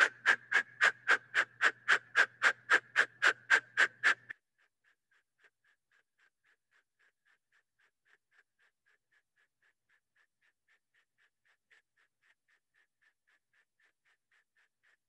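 Kapalabhati breathing: rapid, forceful exhales blown out through the mouth, about four to five a second. They are loud for the first four seconds, then carry on much fainter at the same pace to the end.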